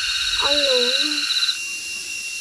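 Insects buzzing steadily at a high pitch, most of the buzzing stopping abruptly about one and a half seconds in and leaving one thin high tone. A person's voice is heard briefly in the middle.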